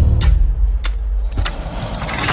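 Sound effects of an animated logo intro: a deep rumble fading down, crossed by about three sharp cracks.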